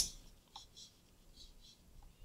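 Faint, soft scratching of a paintbrush dabbing wet watercolor onto paper, a few light strokes.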